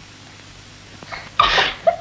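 A woman's muffled, breathy vocal outburst through hands pressed over her mouth: about a second of quiet, then a few short gasping bursts, the loudest about a second and a half in.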